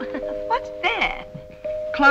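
Old film soundtrack: a woman's voice over background music with several sustained held notes.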